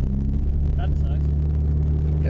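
A car's engine and road noise heard from inside the cabin, as a steady low hum while the car drives through an intersection.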